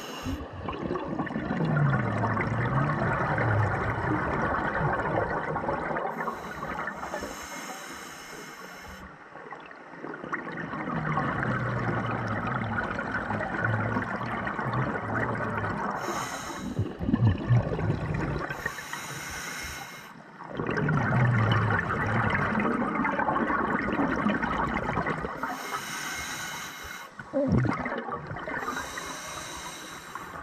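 Scuba regulator breathing heard underwater: a short hiss as each breath is drawn, then a long bubbling rush of exhaled bubbles, in about three slow breaths.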